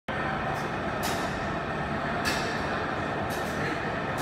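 Steady rumbling gym background noise, with a few brief rustles or soft knocks.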